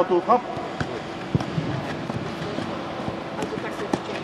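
A few sharp knocks of a football being struck and dribbled by foot, spread out irregularly, after a brief voice at the start.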